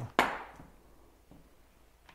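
A single sharp knock just after the start, dying away over about half a second, followed later by a couple of faint small knocks.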